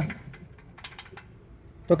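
A few faint, short clicks, about a second in, in a short quiet pause between speech.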